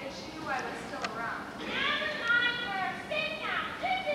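High-pitched young voices talking on stage, with strongly rising and falling pitch.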